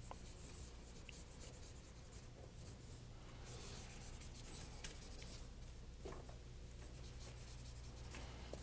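Faint scratching of writing on a board, in short irregular strokes, over a low steady room hum.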